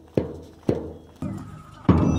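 A large drum beating march time, four strokes about two a second, each stroke ringing out and dying away; just before the end a fuller, steadier sound joins under the beats.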